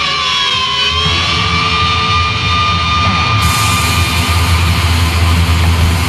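German speed/thrash metal recording: distorted electric guitars, bass and drums playing. A long high note is held from about a second in over a heavy, steady low end.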